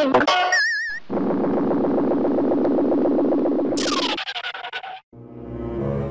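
Cartoon sound effects for a car breaking down. A warbling tone comes first, then about three seconds of rapid pulsing buzz, a sweep falling from high pitch about four seconds in, and a rising swell near the end.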